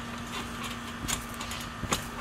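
Children bouncing barefoot on a trampoline: a couple of soft thumps from feet landing on the mat, about a second in and near the end, over a steady low hum.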